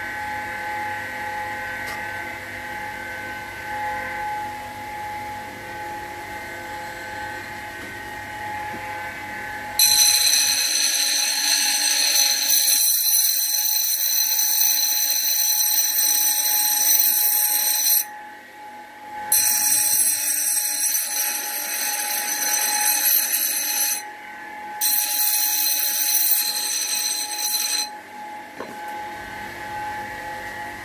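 An old double-wheel bench grinder with 125 mm stones runs with a steady hum. About ten seconds in, work starts at the right-hand wheel and a loud, high-pitched ringing screech sets in. It breaks off twice briefly and stops a couple of seconds before the end, leaving the motor's hum.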